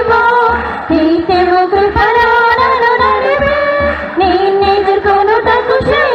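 A congregation singing a worship chorus together, the melody moving from note to note over a steady beat.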